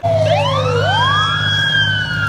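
Fire engine siren wailing as it passes: several overlapping tones sweep up quickly and then slowly fall, over a steady low rumble from the truck.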